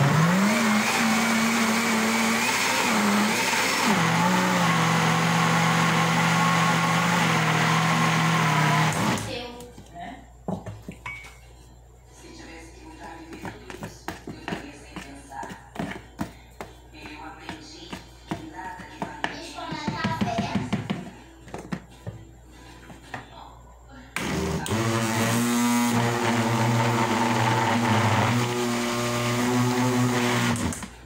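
Electric blender motor running on a thick bread dough of milk and flour, its pitch dropping about four seconds in as it slows under the load. It stops after about nine seconds, leaving scattered knocks and clicks, then runs again near the end. The dough has turned stiff and the blender is struggling to turn it.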